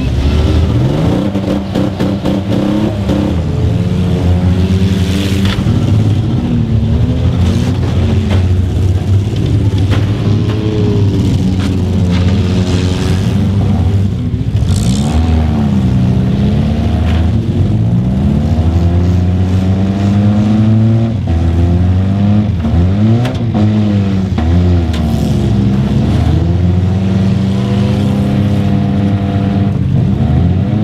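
Several stock compact cars' engines revving up and down at once in a demolition derby, their pitches rising and falling independently, with sharp bangs of cars smashing into each other at intervals.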